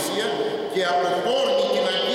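A man preaching a sermon in Greek into a microphone, his voice running on without a break.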